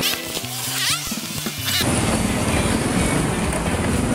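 About two seconds of music with rising sweeps, then the steady engine and road noise of a Honda Supra GTR 150, a single-cylinder motorcycle, riding along.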